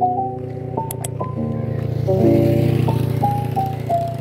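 Background music: a gentle lo-fi keyboard melody of short held notes over a steady low tone.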